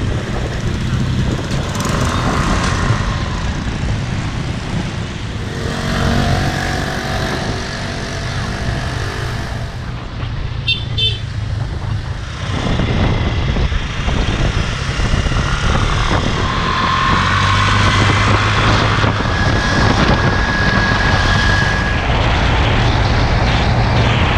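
Small motor scooter running while ridden along a road, its engine hum mixed with wind and road noise on the camera's microphone. Other scooters and traffic pass by.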